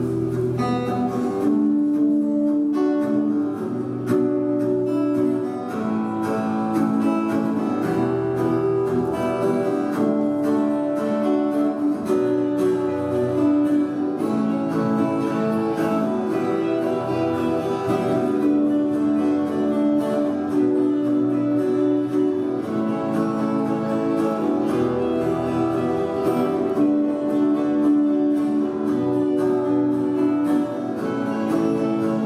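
A group of acoustic guitars playing a song together live, with chords changing every second or two.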